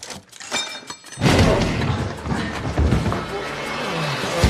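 Action-film soundtrack: a few light clicks, then about a second in a sudden loud crash with shattering that runs on under loud music.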